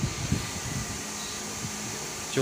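A room fan running steadily, with a faint low hum.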